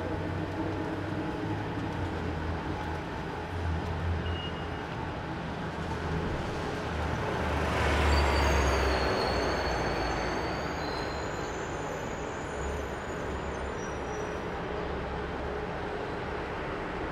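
City bus passing close by on the street: its engine and tyre noise swells to a peak about eight seconds in and then fades, with thin high-pitched squeals as it goes by. A steady low hum of street traffic underneath.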